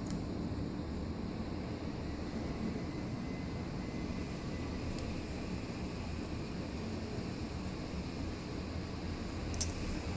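Steady low background rumble, strongest in the bass, with one faint tick about halfway through.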